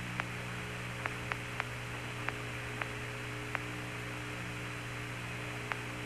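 Steady electrical hum and hiss on the astronauts' open radio voice link, with about ten faint, irregular clicks and no voices.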